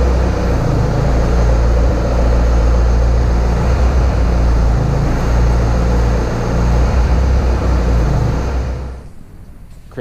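Bobcat skid steer's diesel engine running steadily under load while its loader arms carry a welded steel feeder frame. The engine stops near the end.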